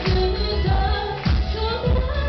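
A woman singing a Japanese pop song live into a handheld microphone, her held notes gliding up and down, over a musical accompaniment with a steady drum beat.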